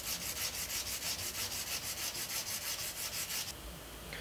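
Hand nail file rasping quickly back and forth across a hardened gel nail, about seven strokes a second, shaping the tip of an extra-long stiletto nail. The strokes stop about three and a half seconds in.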